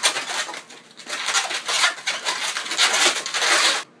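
Latex 260 twisting balloons rubbing against each other as they are twisted and woven by hand: a dense, scratchy rubbing that stops abruptly near the end.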